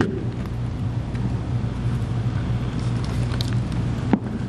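Steady low hum of background room noise, with a few faint knocks as the podium changes speakers.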